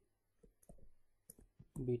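A stylus tip clicking lightly on a touchscreen as a word is handwritten: a string of short, irregular taps. A voice comes in near the end.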